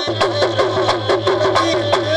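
Live Sindhi folk music: a hand drum playing a fast, steady beat under a bending melody line, over a low pulsing hum.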